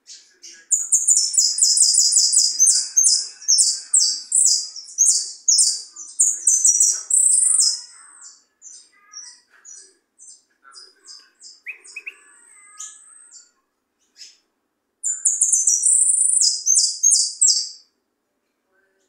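Jilguero (Argentine saffron finch) singing: a long run of rapid, high chirping notes for about seven seconds, then sparser single notes, then another fast run in the last three seconds.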